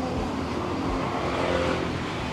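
A steady engine or motor hum running without a break, with faint talk mixed in.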